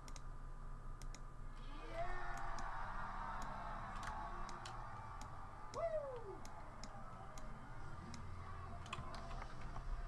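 Irregular clicks and key taps at a computer keyboard and mouse while working in Photoshop. Underneath runs faint crowd noise from a live comedy show playing in the background, with one short rising-and-falling voice near the middle.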